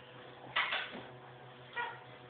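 A playing puppy's short bark about half a second in, then a brief high-pitched yip near the end.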